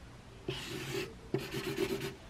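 Pen drawing on paper: two scratchy strokes, a short one about half a second in and a longer one from about a second and a half in.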